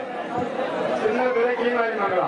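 A crowd of men shouting and chattering, many voices overlapping, with one voice drawing out a long call in the second half.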